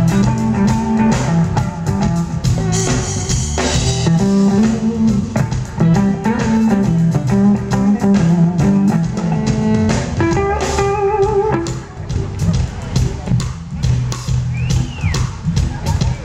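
Live smooth-jazz band playing an instrumental passage: an electric hollow-body guitar plays the lead over a walking bass line, drums and keyboards.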